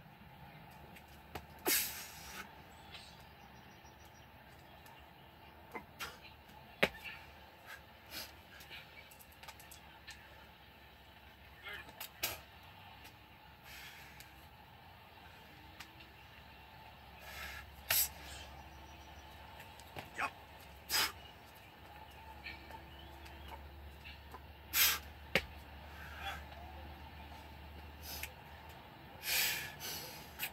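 A man breathing hard, winded from a set of burpees, with a short sharp exhale or grunt every few seconds over a faint outdoor background.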